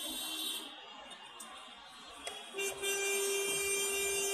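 A vehicle horn honking in traffic: a short honk at the start, then a long, steady honk that begins a little after halfway.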